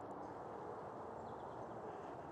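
Faint, steady outdoor background noise with a few faint, distant bird chirps.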